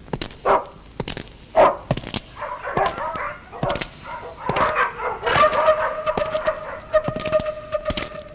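A dog barking, two sharp barks early and more in the middle, then a long held howl through the last three seconds.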